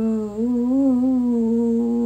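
A woman holding a long sung note without words, with no accompaniment. Her pitch wavers a little, and there is a brief drop in level just before half a second in.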